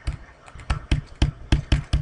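Stylus tapping on a tablet screen while letters are handwritten: a quick, irregular run of sharp taps, several a second.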